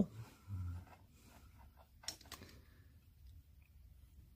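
Quiet room tone with a brief low murmur about half a second in and a faint click about two seconds in.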